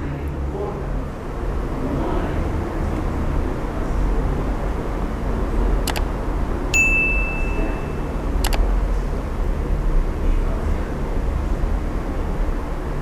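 Subscribe-button animation sound effect: a mouse click, a single bell-like ding lasting about a second, and another click about two and a half seconds after the first, over a steady low rumble.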